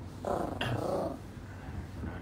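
A small dog, a Yorkshire terrier, growls for about a second, with a brief higher note partway through.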